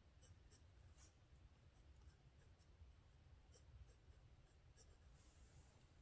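Faint pen-on-paper writing: a pen nib scratching and ticking on notebook paper in short, separate strokes with pauses between them, as Chinese characters are written by hand. A low steady rumble lies underneath.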